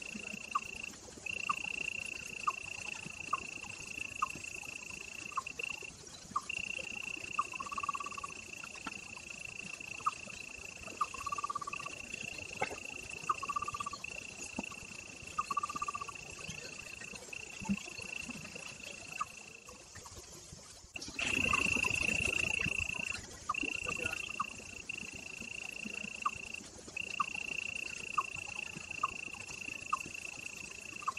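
Outdoor chorus of calling insects and frogs: a steady high trill that breaks off briefly every few seconds, over short clicking calls about once a second. About two-thirds of the way through, a rushing noise swells for about two seconds and is the loudest sound.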